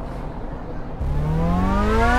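A low rumble, then about a second in a loud pitched tone starts and climbs steadily in pitch.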